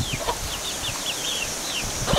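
Birds chirping: a run of short, high chirps, each falling in pitch, several a second, over a low background rumble.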